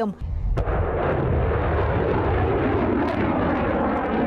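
Missile launch: a rocket motor firing. It starts suddenly as a low rumble, fills out about half a second in, and holds as a loud, steady noise for about four seconds.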